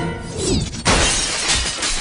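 A short falling swoop, then a sudden loud crash of shattering glass about a second in, with film score music playing underneath.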